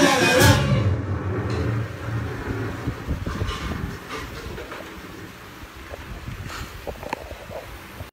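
A band with bass guitar and drum kit playing in a small room: the singing stops about half a second in, and the music dies down to loose, scattered drum and bass sounds that keep getting quieter.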